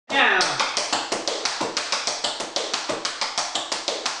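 Tap shoes striking a wooden floor in a steady, even rhythm of about six taps a second.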